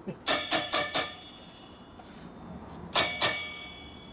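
Metal clinks, each with a short ringing tail, as clutch springs and pressure-plate parts are fitted by hand onto a motorcycle clutch hub. Four quick clinks come in the first second, then two more about three seconds in.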